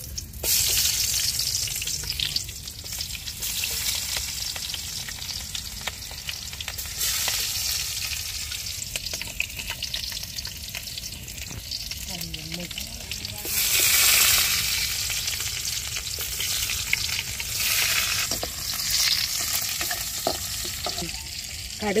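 Hot oil sizzling in a wok as a sliced onion is cut into it. The frying hiss swells in surges and is loudest about two-thirds of the way through.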